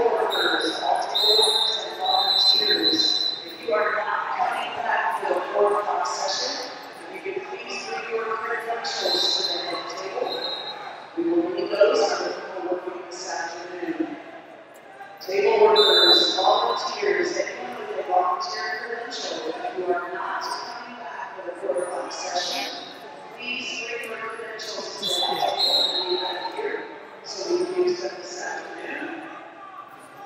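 Voices talking indistinctly in a large, echoing hall, with occasional thumps and a few brief high squeaks.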